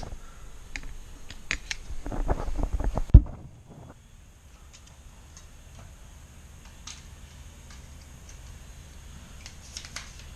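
Plastic and metal clicks and rattles of a cheap telescoping selfie stick being handled and fiddled with after a part has come off, with one sharp knock about three seconds in; after that only a few faint clicks.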